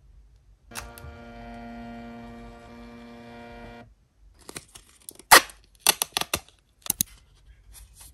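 Phomemo M02 Pro mini thermal printer printing: a steady motor whine for about three seconds as the paper feeds out. Then a string of sharp paper snaps and crackles as the printed transparent strip is torn off and handled.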